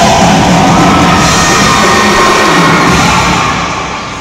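Marching band brass and drums playing loudly, the sound fading away near the end.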